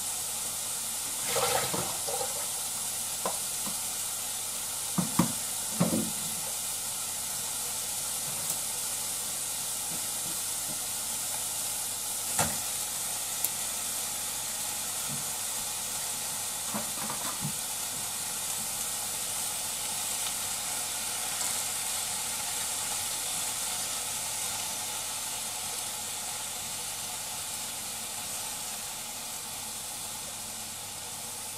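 Sliced onions and carrots sizzling in a pot, a steady hiss, broken by a few sharp knocks and clatters in the first half as sliced potatoes go into the pot.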